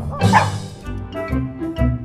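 A brief dog bark sound effect in the first half second, then upbeat background music with a steady beat.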